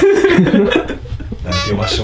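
Men talking and chuckling.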